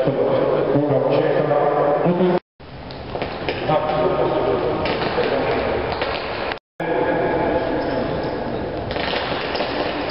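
Indistinct voices echoing in a large sports hall, cut off twice by brief dropouts where the footage is edited.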